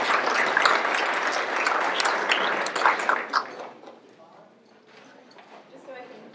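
Audience applauding, the clapping dying away about three and a half seconds in.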